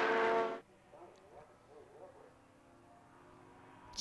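Race car engine running at steady high revs, cut off abruptly about half a second in. After that only faint distant race car engines are heard, slowly building toward the end.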